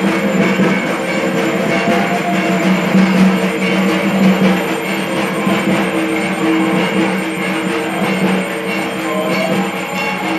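Music with drums and percussion.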